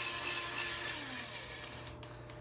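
Spin-art spinner and canvas whirring as the spin winds down: a faint whir with a tone falling in pitch, slowly fading.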